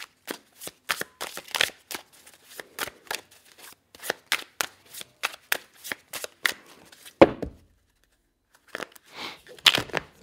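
Spellcaster's Tarot deck being shuffled by hand: a run of quick, irregular card taps and slaps, then one louder knock a little past seven seconds in, a short pause, and more taps as the deck is split in two halves.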